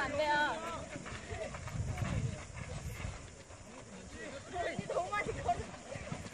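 Distant shouts and chatter of players across an outdoor sports field, clearest just after the start and again about five seconds in.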